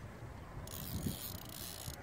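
Spinning fishing reel giving off a faint, steady mechanical whir.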